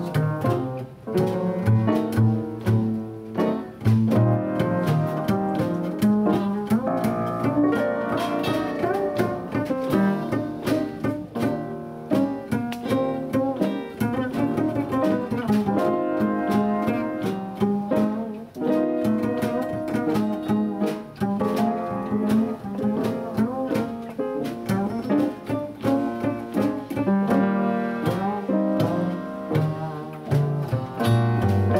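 Upright double bass plucked pizzicato, carrying a solo line in a jazz number, with electric archtop guitar chords behind it.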